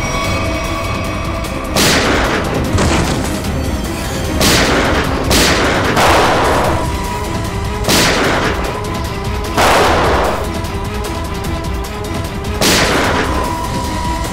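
Gunshots in a shootout, about seven single shots spaced irregularly a second or more apart, each ringing out with an echoing tail, over a tense background music score.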